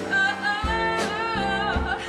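A woman singing live into a microphone with band accompaniment, her voice sliding and wavering in pitch over steady instrumental notes.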